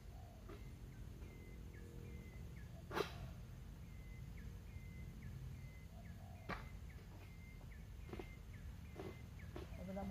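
A small animal calling faintly in short repeated high chirps, about two a second, over a few sharp knocks, the loudest about three seconds in.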